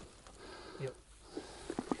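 Quiet, faint sloshing of a hand working in shallow pond water, with a few small light splashes near the end.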